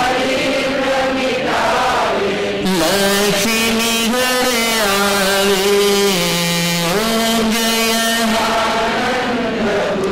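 A man's voice chanting a devotional chant in long held notes that step up and down in pitch.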